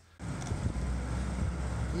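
M8 Greyhound armoured car's Hercules six-cylinder petrol engine idling, a steady low rumble that begins abruptly shortly after the start, with wind on the microphone.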